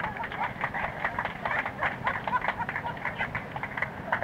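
A busload of people laughing together, many voices in a dense, choppy mix, heard on a home cassette recording with a dull, muffled top end.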